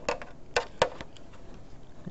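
A handful of short, sharp clicks and taps. A quick pair comes at the start and the two loudest come about half a second and just under a second in.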